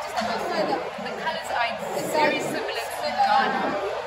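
Indistinct chatter of several voices talking, with no clear words.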